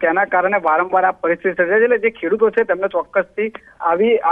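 Speech only: a man talking steadily over a telephone line, the voice thin and narrow-sounding.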